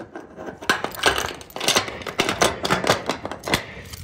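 Metal clicks and clacks of a disc padlock and steel slide-bolt latch being worked and locked on a corrugated roll-up storage door: a string of irregular sharp knocks.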